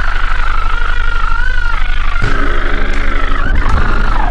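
Loud, distorted eerie soundtrack: a low drone under a high, wavering whine that rises and falls, the whole pulsing rapidly. About halfway in, a lower buzzing tone joins.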